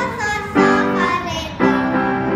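Young girls singing a song together with piano accompaniment, held sung notes with new notes coming in about half a second in and again near the end.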